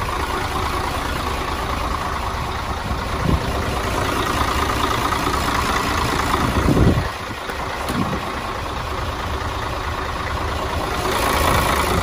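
Heavy truck's diesel engine idling steadily. A single heavy thump comes about seven seconds in.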